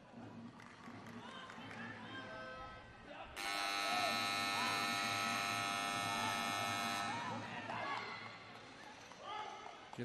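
Futsal timekeeper's buzzer sounding one long steady tone for about three and a half seconds, starting about three seconds in, to signal a team time-out. Voices of players and staff sound around it.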